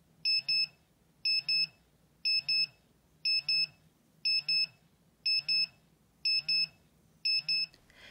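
NR-950 handheld radiation monitor (Geiger counter) sounding its alarm: high, steady electronic double beeps about once a second, eight pairs. The alarm is set off by the dose rate climbing fast past its alarm threshold as the radioactive vintage clock sits beside it.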